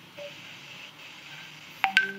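Faint room noise, then two sharp clicks in quick succession near the end.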